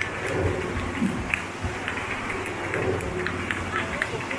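A vintage motorcycle engine running as the bike circles the wooden Wall of Death drum, with a low pulsing rumble, under crowd voices.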